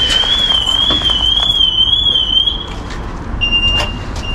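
A high electronic alarm tone warbling up and down about three times a second, which stops about two-thirds of the way in; near the end a single steady beep at a similar pitch starts. Faint clicks and rustling of handled junk underneath.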